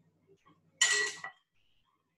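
A metal utensil scraping and clinking once against a glass mixing bowl about a second in, as thick ice-cream mixture is scooped out into a mould.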